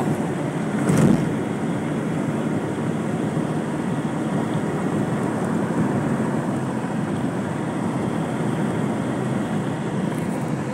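Steady road and engine noise heard inside the cabin of a moving car, with a single short thump about a second in.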